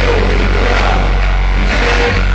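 Loud live music from a concert PA with a heavy, steady bass, recorded close up in a packed venue.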